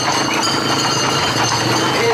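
A tightly packed group of Camargue horses moving along a paved road with a crowd on foot running and calling out beside them, a continuous dense din over a steady low rumble.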